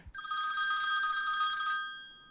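Telephone ringing: a single ring of about a second and a half that then fades away, the line ringing as a call is placed.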